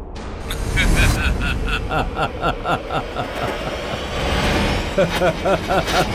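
A man's long taunting laugh in quick rhythmic bursts, about four a second, with rising and falling 'ha-ha' arches near the end, over a steady low rumble.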